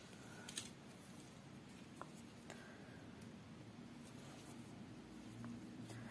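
Near silence in a small room, with a few faint clicks from fingers handling tatting thread and beads.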